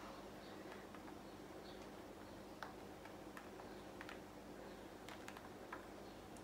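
Near silence: a low steady hum with a few faint, scattered ticks.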